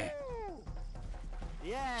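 A man's excited, drawn-out shout, falling in pitch, as he cheers a big hooked fish leaping. A second rising cry starts near the end.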